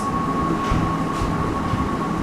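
Steady low rumbling background noise with a constant thin high whine running through it.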